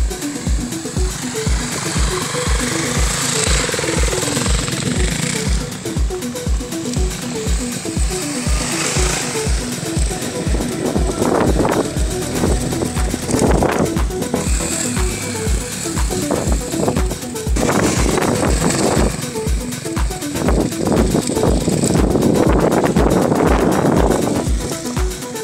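Background music with a steady electronic dance beat, about two deep kicks a second.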